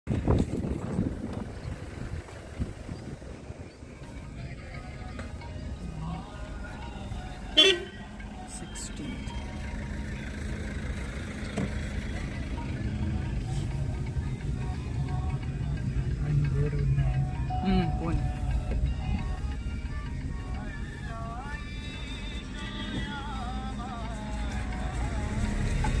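Car driving, heard from inside the cabin: a steady low engine and road rumble, with one short, loud horn toot about seven and a half seconds in.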